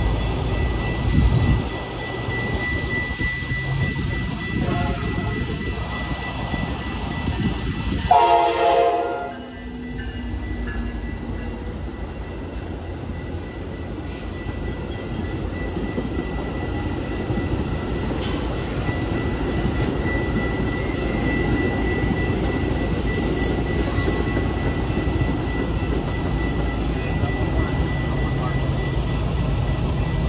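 Metra commuter train passing through a road grade crossing: a short horn blast about eight seconds in, then the steady rumble of the double-deck coaches rolling by. The crossing's warning bell keeps ringing as a steady high tone.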